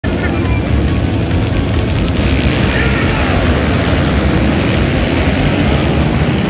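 A field of dirt bike engines running together at a race start line, a loud, steady, dense noise with voice and music mixed in.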